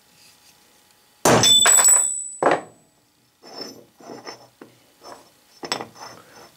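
Brass hammer striking a punch set in an aluminum mold half on an anvil: a quick cluster of loud blows about a second in, with a high metallic ring, followed by several lighter taps and knocks.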